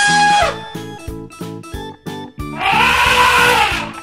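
Elephant trumpeting over background children's music with a steady beat. One call ends about half a second in, and a longer call that rises and then falls starts about two and a half seconds in.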